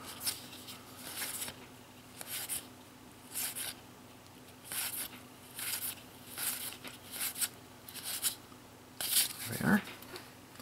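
Dragon Ball GT trading cards being slid one by one across each other as a hand flips through a pack: a soft swish of card on card about once a second.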